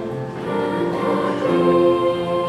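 Mixed high school choir singing sustained chords, growing louder near the end.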